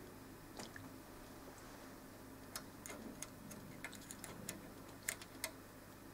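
Quiet room with a faint steady low hum and a scattering of faint, irregularly spaced short clicks.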